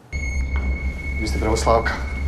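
Film soundtrack that starts abruptly: a steady high-pitched whine over a low hum, with a woman's voice speaking a few words from a little over a second in.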